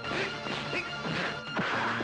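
Film fight-scene punch sound effects: about four sharp, smacking hits in quick succession over background music.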